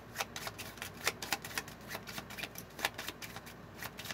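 Tarot cards being shuffled by hand: a run of quick, irregular card clicks and slaps.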